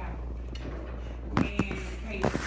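Steady low hum with two short knocks about one and a half seconds in, typical of a phone being handled or rubbed against fabric while recording.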